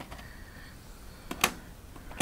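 A VHS cassette being handled at the slot of a TV/VCR combo: a faint click at the start, then two sharp plastic clicks close together about a second and a half in.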